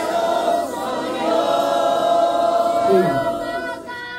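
A church congregation singing a worship song together, many voices holding long sustained notes.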